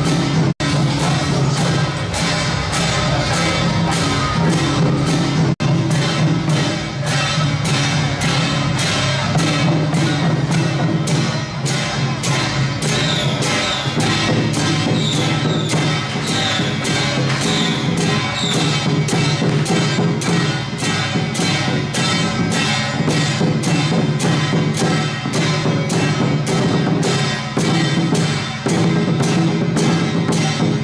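Temple procession drum-and-cymbal troupe playing: large barrel drums and clashing hand cymbals in a steady beat of about two strokes a second. The sound cuts out briefly twice in the first six seconds.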